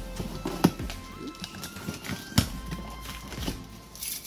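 Background music with a melody, over a few sharp clicks and taps from a box cutter slitting the packing tape on a cardboard box. The two loudest clicks come early on and about halfway through.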